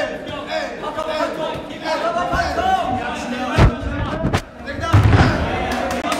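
Spectators and cornermen shouting during a ground fight, with sharp thuds of punches and bodies hitting the mat. The loudest thud comes a little past three and a half seconds in, and another heavy one about five seconds in.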